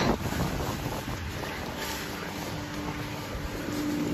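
Wind buffeting a phone microphone outdoors, a steady rushing noise, with a faint steady low hum coming in about halfway through.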